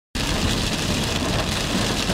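Heavy rain falling on a car's windshield and roof, heard from inside the cabin as a dense, steady hiss.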